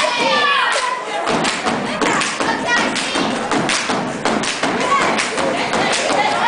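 Step team stomping their feet on a wooden stage and clapping in a quick, steady rhythm, with voices calling out over the strikes.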